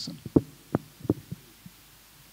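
Handheld microphone handling noise: a handful of short, dull thumps as the live microphone is lowered and set on the table, the loudest about a third of a second in.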